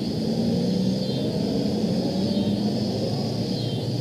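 A car engine idling steadily, a low even hum.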